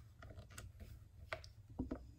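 A few faint, scattered light clicks over a low steady hum.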